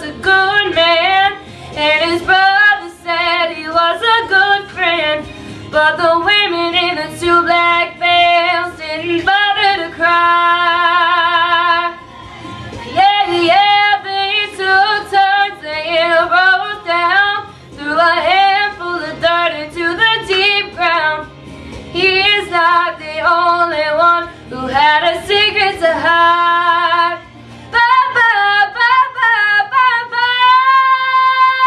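A woman singing a country ballad solo, phrase after phrase, with a long note held with vibrato about a third of the way in.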